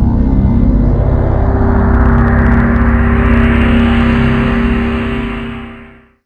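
A loud, sustained cinematic drone: a deep rumble under steady held low tones, which fades out over the last second.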